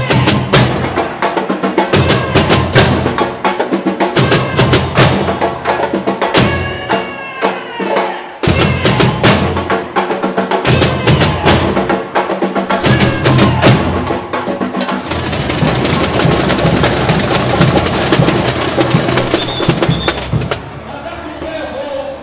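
Samba school bateria playing a live batucada: surdo bass drums, caixa snare drums and small percussion driving a fast, dense rhythm. The whole drum section cuts out for an instant about eight seconds in, then comes straight back.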